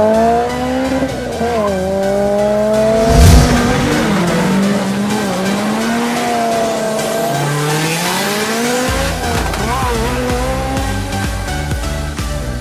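Car doing a burnout at a drag strip: tires squealing with the engine held at high revs, the pitch wavering up and down over several seconds. There is a loud thump about three seconds in, and background music plays underneath.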